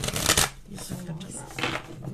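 A deck of tarot cards being shuffled by hand, loudest in the first half second, then softer rustling of the cards.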